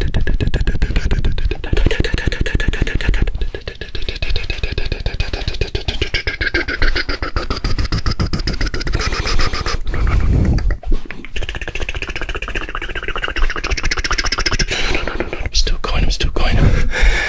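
Fast, aggressive mouth sounds right up against a binaural ear-shaped microphone: a rapid stream of clicks, lip smacks and tongue pops, many per second. Low rumbling gusts of air hit the microphone as he spins, heaviest a little past the middle.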